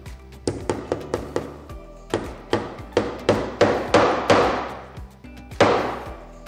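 A small hammer striking pronged metal screw-cover studs into a wooden cabinet door. It gives a few light taps, then a run of harder blows about two or three a second, and one last hard blow near the end.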